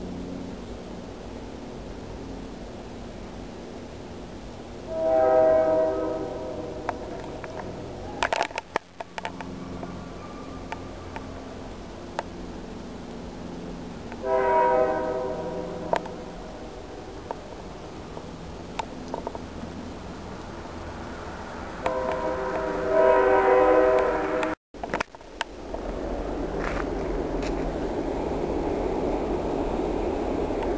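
A distant locomotive's Nathan K3LA five-chime air horn sounding three long blasts about eight seconds apart, the last the longest, over the low steady drone of the approaching train. Near the end the sound breaks off suddenly and gives way to a steady rushing noise.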